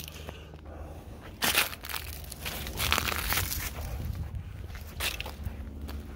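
Footsteps crunching on dry wood-chip mulch and fallen oak leaves, in irregular steps.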